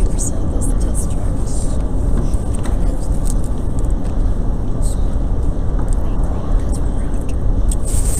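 Steady low rumble of room noise in a large hall, with an indistinct murmur of voices and a few faint clicks.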